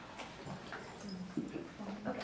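A quiet room with a few soft, brief voices and scattered light taps and knocks.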